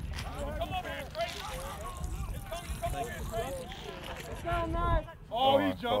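Men's voices talking and calling in the background, over a low rumble on a body-worn microphone; a louder call comes near the end.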